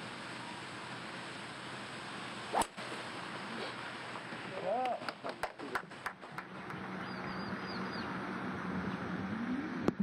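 A golf tee shot: one sharp crack of the club head striking the ball about two and a half seconds in, over steady outdoor background noise, with the ball hit from the tee with a club other than a driver. A couple of seconds later a brief voice-like sound and a quick string of sharp clicks follow.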